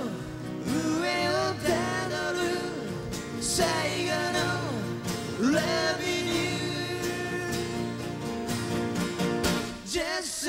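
A live band playing acoustic guitars, with a male voice singing a long, gliding melody over steady chords.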